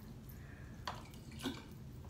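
Glass marbles dropped into a partly water-filled plastic bottle: two short plopping clicks, about a second in and again half a second later.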